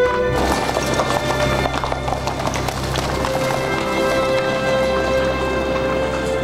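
Horse hooves clip-clopping on a street, with background music holding long notes under them from about halfway through.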